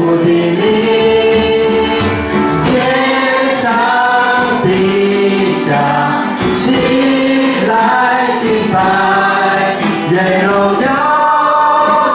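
Worship music: women's voices singing a Mandarin praise song together over digital piano accompaniment, with long held notes.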